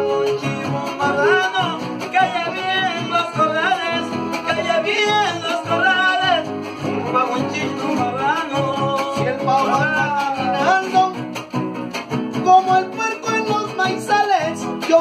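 Son huasteco played live by a trío huasteco: the violin carries a sliding melody over the strummed jarana huasteca and huapanguera.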